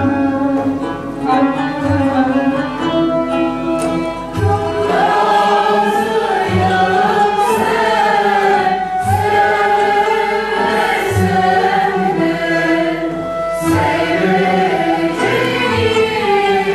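A Turkish classical music ensemble playing in makam segah: ud, kanun and violin carry an instrumental phrase, then a mixed choir comes in singing the şarkı about four and a half seconds in. A low drum beats the rhythm with a stroke every second or two.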